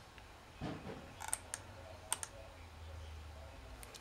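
A handful of faint, sharp clicks from computer keys being pressed to copy a file, in two small clusters about one and two seconds in.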